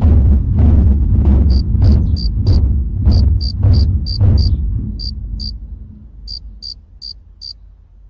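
A large studded war drum beaten in a steady rhythm, about two strokes a second, its deep boom dying away about six seconds in. Over it, from about a second and a half in, a cricket chirps in short high chirps, two or three a second, and keeps on after the drum fades.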